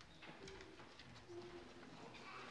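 Near silence: room tone with soft footsteps and two brief, faint low hums.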